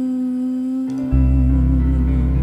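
Slow live worship music: a violin, cello and band hold a sustained chord under a voice humming one long note. A deep bass note comes in about a second in, and the held note then takes on a vibrato.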